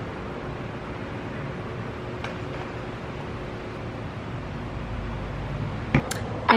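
Steady fan-like hiss and hum, with one faint click about two seconds in.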